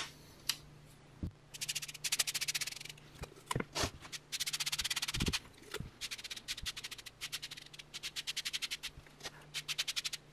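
Kitchen sponge scrubbing a top coat onto a thin aluminium-wire coil on a planar speaker membrane, in runs of quick rubbing strokes, several a second, starting about a second and a half in.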